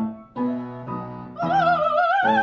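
Mezzo-soprano singing operatically with grand piano accompaniment. After a short breath a piano chord sounds, and about one and a half seconds in her voice returns on a long note with wide vibrato that slides upward.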